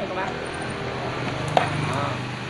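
Hands handling a chainsaw's plastic top cover, with one sharp click about one and a half seconds in, over a steady low hum.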